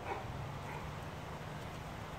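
Newfoundland dog making two brief faint sounds, one at the very start and one just under a second in, while tugging at a stick hung from a rope. A low steady hum runs underneath.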